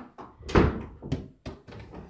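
A few dull thumps and knocks, the loudest about half a second in, followed by two lighter ones.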